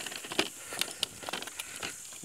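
Small wooden cart drawn by two yoked rams moving along a paved road: irregular light clicks and rattles, a few per second, from hooves and cart over a steady road noise.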